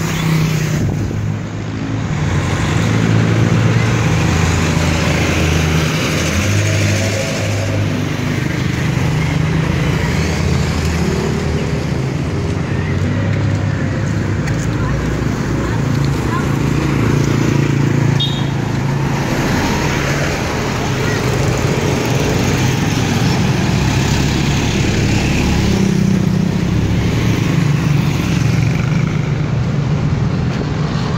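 Street traffic: motorcycles and motorcycle tricycles running and passing close by, with a steady low engine hum under it.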